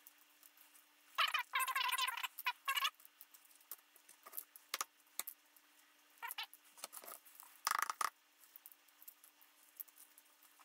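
Shells of hard-boiled eggs crackling and crinkling as they are cracked and peeled by hand. The sound comes in short irregular bursts with pauses between; the longest run is a little over a second in, and there is another near the end. A faint steady hum runs underneath.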